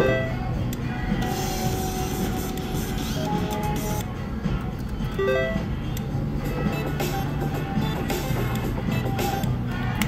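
Top Dollar slot machine being played for at least two spins: its reels spin and stop with short electronic beeps and chime tones, over a steady musical background.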